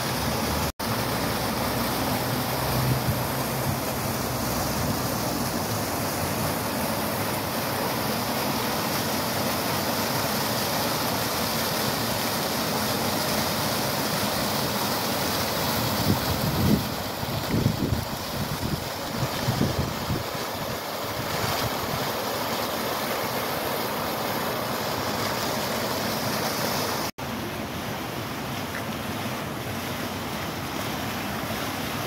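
Fountain jets splashing into a pool: a steady rush of falling water, with a few low thumps on the microphone between about 16 and 20 seconds in. The sound drops out for an instant near the start and again near the end.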